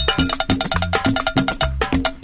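Latin dance music from a DJ mix: a steady percussion beat with a repeating bass line.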